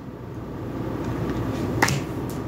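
A single sharp click near the end as a card is laid down on the table, over a steady low room hum.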